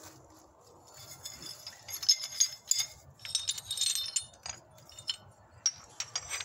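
Knapped stone flakes clinking against each other as they are handled and picked up from a pile, a run of sharp glassy clinks with a short ring, thickest in the middle.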